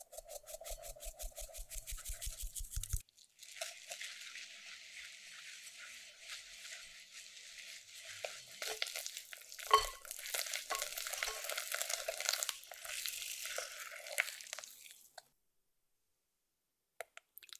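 A fine-mesh metal sieve tapped rapidly, about seven taps a second, sifting flour and baking powder into a glass bowl. Then a whisk stirring the dry ingredients into the egg-white mixture in the glass bowl, scraping steadily, with one sharp clink against the bowl midway, stopping shortly before the end.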